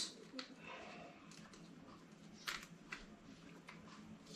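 Faint, sparse small clicks and rattles of plastic parts being handled as a wheel is taken off an RC truck; the sharpest click comes a little past halfway.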